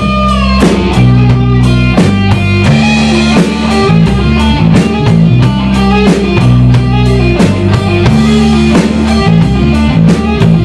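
Live rock band playing an instrumental passage: electric guitar over bass guitar and a drum kit keeping a steady beat.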